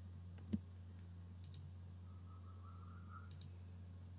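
Computer mouse buttons clicking a few times, mostly in quick pairs like double-clicks, over a steady low hum. The loudest click comes about half a second in.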